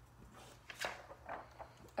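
A paper worksheet rustling faintly as it is handled and turned over against a whiteboard, in a few short rustles and scrapes, the clearest about a second in.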